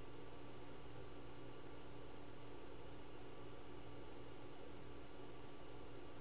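Steady low hiss with a faint electrical hum: the recording's background noise, with no other event.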